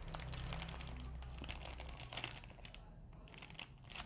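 Thin clear plastic bag crinkling as it is handled between the fingers: a run of small crackles that thins out about three seconds in.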